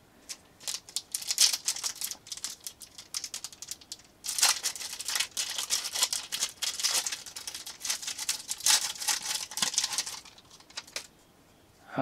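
Foil wrapper of a trading card pack crinkling as it is torn open by hand: scattered crackles at first, then about four seconds in a dense run of crinkling that lasts some six seconds and stops about a second before the end.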